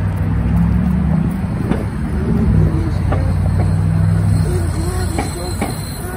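City street traffic with a loud, low mechanical drone, a steady hum that eases off after about four and a half seconds.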